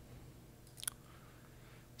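Faint room tone with a single computer mouse click a little under a second in.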